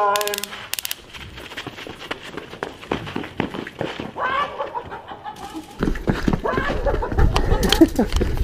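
Frightened shouts and cries from people fleeing, with a few short bursts of rapid rattling right at the start. From about six seconds in, a loud low rumble and thumps from a camera carried at a run are added under the cries.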